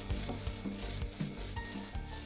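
Paint roller rubbing over a plastered wall in repeated strokes as paint is rolled on.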